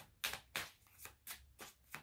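A deck of cards being shuffled by hand: about six short strokes of cards sliding over one another, roughly three a second.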